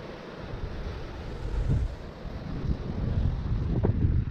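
Wind buffeting an action camera's microphone, with sea surf breaking below; the buffeting grows stronger near the end.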